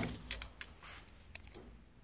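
A few faint metallic clicks and taps from a manual curtain grommet press and a large #15 metal grommet being handled, as the grommet is pressed and taken out of the press.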